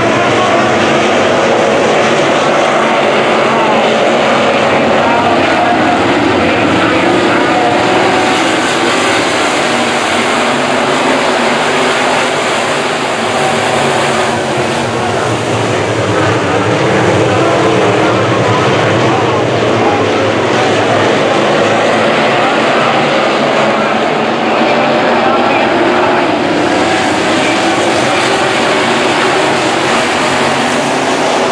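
A pack of sport modified dirt-track race cars racing together, their V8 engines loud, with many overlapping engine notes rising and falling in pitch as the cars go through the turns.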